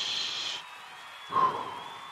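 A long breathy exhale of relief close to a headset microphone that fades out about half a second in, followed by one short, brief sound about a second and a half in.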